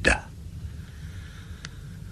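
A narrator's voice ends a phrase just as the sound begins. Then comes a pause of faint steady hiss with one small click about one and a half seconds in.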